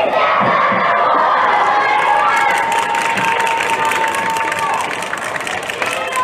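A group of children cheering and shouting together, with one long held shout in the middle.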